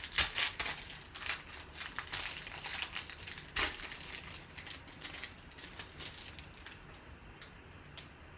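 Foil wrapper of a football trading-card pack crinkling as it is twisted and torn open by hand: a run of sharp crackles, loudest in the first half, growing sparser and fainter as the cards come out.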